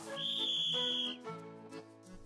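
A single steady whistle blast lasting about a second, like a sports referee's whistle, over quiet background music.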